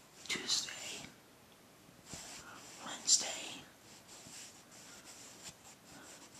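A man whispering faintly to himself in a few short, breathy bursts, without voice.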